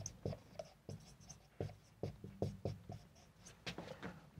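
Marker pen writing on a whiteboard: faint, short, irregular strokes as letters are drawn.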